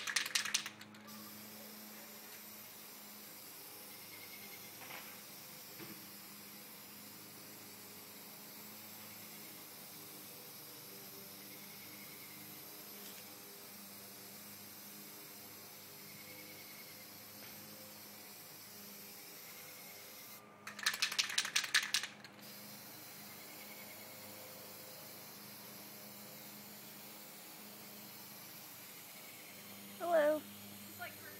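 Aerosol can of black appliance epoxy paint spraying with a steady hiss. Twice the can is shaken, its mixing ball rattling rapidly: briefly at the start and again for about a second and a half around two-thirds of the way in.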